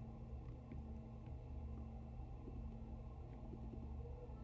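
Quiet room tone: a steady low electrical hum with a few faint clicks from the computer as files are selected.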